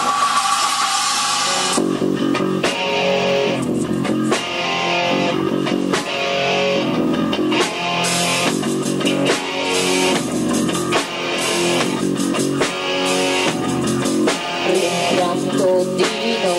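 Live rock band playing an instrumental passage on electric guitar and drum kit, the full band coming in about two seconds in after a sustained opening chord.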